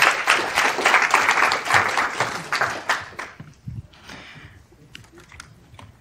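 Audience applauding, the clapping dying away about three seconds in, followed by a few faint scattered knocks.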